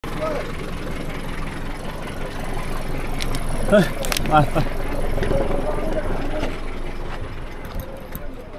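A jeep engine idling, a steady low running sound, with a few indistinct voices briefly around the middle.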